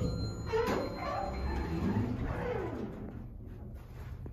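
Otis hydraulic elevator's doors sliding open at a floor stop, with a wavering whine from the door mechanism over a low steady hum in the car. The whine ends in a falling tone at about three seconds.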